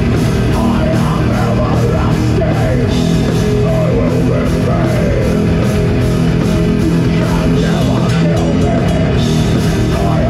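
Death metal band playing live: heavily distorted electric guitar, bass guitar and drum kit, loud and dense throughout, over a steady drum beat.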